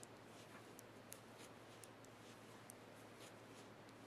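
Faint, irregular clicks of metal knitting needles tapping and sliding against each other as stitches are purled, about two a second, over a low steady hum.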